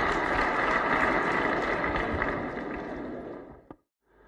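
Steady, hiss-like background noise with no speech in it. It fades out over the last second and a half, ending in a single short click before silence.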